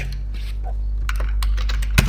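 Computer keyboard typing: a quick run of key clicks, mostly in the second half, over a steady low hum.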